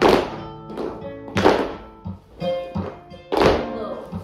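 Flamenco dancers' heeled shoes stamping on a wooden studio floor, three heavy strikes roughly a second and a half to two seconds apart with lighter steps between, over flamenco guitar playing soleá.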